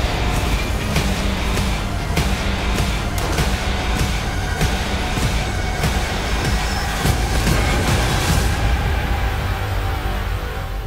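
Loud, dense trailer music with heavy low rumble, struck through by many sharp hits and crash-like impacts from the action sound effects.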